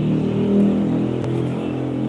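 A motor vehicle engine running with a steady low hum, loudest about half a second in and easing off slightly toward the end.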